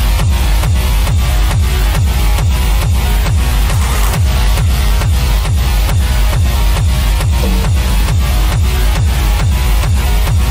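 Acid techno playing as a continuous DJ mix: a steady four-on-the-floor kick drum, a little over two beats a second, over heavy bass and a dense upper layer.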